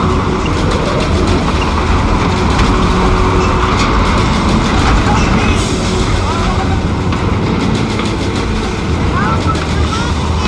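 Loud, steady rush of tornado wind from a storm sound effect, with a few short shouts breaking through it.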